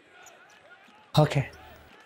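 A single short spoken "Okay" about a second in, over a faint, quiet background.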